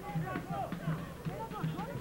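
Faint stadium ambience during a football match: distant voices from the stands and pitch, over a steady low hum on the broadcast sound.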